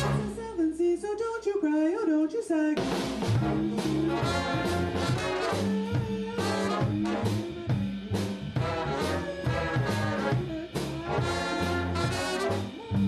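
Swing big band: a woman's singing voice over sparse backing, then about three seconds in the full band comes in with brass and drums.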